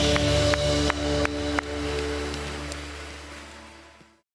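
Rock band's closing chord ringing out and fading away, with five quick sharp hits in the first second and a half.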